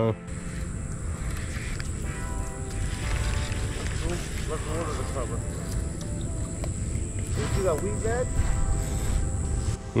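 Low wind rumble on the microphone, with a faint voice heard twice in the background.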